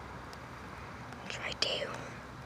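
Faint outdoor background, then a short whisper from a person about a second and a half in.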